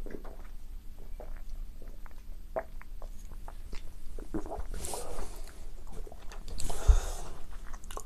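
Quiet mouth sounds of a man drinking and tasting beer: small wet clicks of sipping and swallowing, then a couple of breaths out. There is a soft low thump near the end as the glass is set down.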